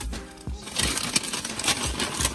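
Rustling and crinkling of a bag as the snack bag of potato chips is pulled out, starting about two-thirds of a second in and carrying on, with music underneath.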